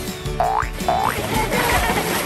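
Background music with two quick rising cartoon sound effects about half a second and a second in, followed by a splash of two people jumping into a swimming pool near the end.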